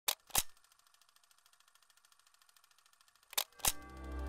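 A pair of sharp clicks, then faint even ticking at about eight a second, then another pair of clicks near the end as soft music begins.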